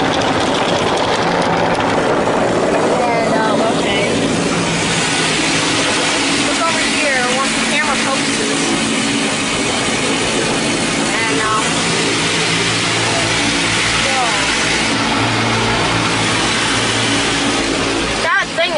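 Automatic tunnel car wash's wash cycle heard from inside the car: water spray and washing equipment beating on the body and soaped-up windows in a loud, steady rush over a low machine hum.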